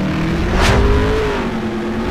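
Car engine revving sound effect for an animated outro, with a steady engine pitch that climbs slightly and eases off. A fast whoosh sweeps past about half a second in.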